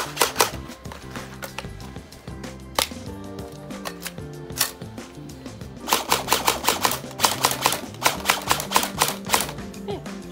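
A 3DG G36K electric gel blaster firing on full auto: a rapid string of shots at about seven a second from about six seconds in until near the end, after a few single sharp clicks. Background music plays underneath.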